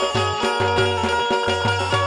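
Traditional Indian folk music: low drum strokes in a steady rhythm under a sustained melody.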